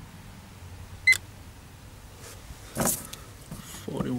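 Fluke 1625 earth ground tester giving one short, high beep about a second in, as a ground-resistance measurement finishes. A brief rustle of handling noise follows near the three-second mark.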